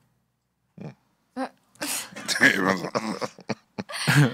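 After a brief silence, a few short breathy bursts, then people laughing and coughing in a burst of about a second and a half.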